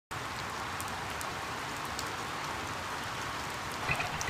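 Steady rain falling: an even hiss of rain with scattered sharp ticks of single drops.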